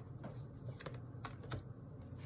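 Tarot cards being handled on a table: about four short, sharp clicks and snaps spread through a couple of seconds, over a faint low room hum.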